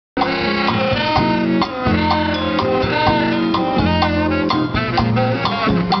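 Saxophone playing a solo melody over a live band, with sustained bass notes and a steady drum beat underneath.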